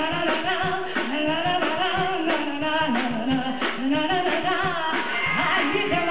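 Live band: a woman sings long, bending melodic lines into a microphone over a steady drum beat and backing instruments.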